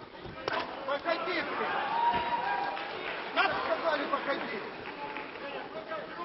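Arena crowd noise with men's voices calling out, and a couple of sharp knocks, one about half a second in and another past three seconds.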